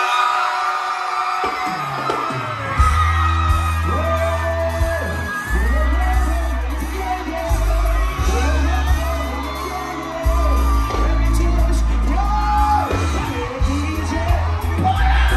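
Live reggae band playing through a loud concert PA. A heavy bassline comes in about a second and a half in, changing note every second or so under keyboards and drum hits, with crowd whoops and yells over it.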